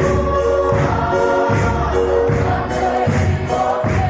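Choir singing gospel music, with long held notes over a steady low beat.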